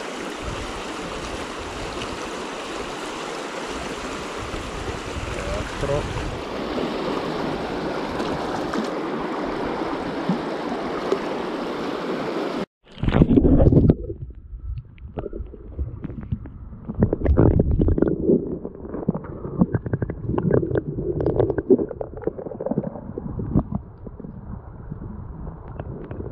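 A steady rush of flowing water that cuts off abruptly about halfway through. After the cut come irregular, muffled low bumps and rustles.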